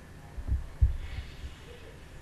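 Two soft, low thumps about a third of a second apart, close to the microphone, against faint room tone.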